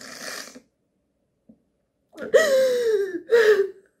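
A woman crying in grief: a shaky breath drawn in, then, about two seconds in, a long high wail that falls in pitch, followed by a shorter sob near the end.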